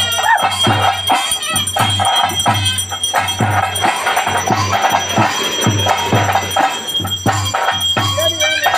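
Traditional ritual music: drums beating about twice a second, with jingling metal percussion and a wavering high melody over them.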